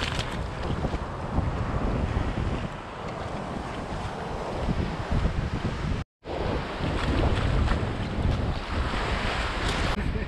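Surf washing over wet sand, with wind buffeting the microphone in a steady low rumble. The sound cuts out completely for a moment just after six seconds in.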